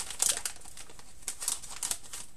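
Plastic snack bag of mint sticks being handled in the hands, its film crackling irregularly in two spells, near the start and again in the second half.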